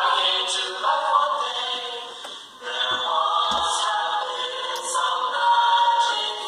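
A choir singing without instruments, many voices holding chords.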